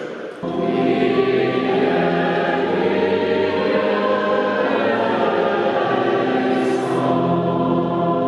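Mixed choir singing a slow sacred piece in long held chords, starting suddenly about half a second in.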